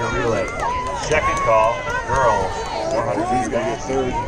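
Crowd babble: the overlapping voices of many spectators talking at once, with no single voice standing out.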